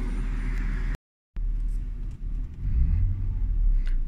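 Aftermarket Hart electric fuel pump running in a BMW E39's open fuel tank: a steady low hum with a faint high-pitched squeal. After a short cut, a low vehicle rumble is heard inside the car cabin, growing louder about three seconds in.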